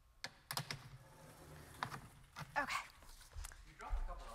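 Chalk tapping and scraping on a blackboard, a few sharp taps spread through the moment.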